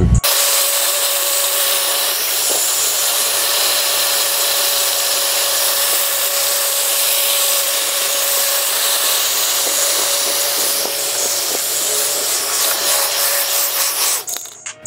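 A handheld electric air appliance running steadily, aimed into an open rocker panel: a constant rush of air with a steady motor whine.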